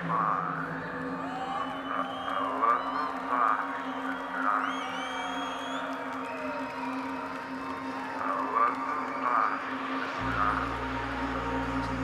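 A sustained electronic drone holds under scattered cheers and whoops from a festival crowd, with a couple of rising whistles from the audience in the middle. About ten seconds in, a deep bass drone comes in suddenly.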